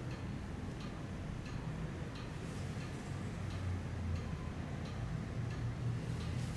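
Faint, regular ticking, a little under two ticks a second, over a low steady hum.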